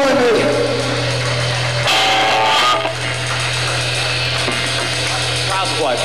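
Live amplified electric guitar and bass holding a low sustained note under a wash of amp noise, with a short guitar figure about two seconds in.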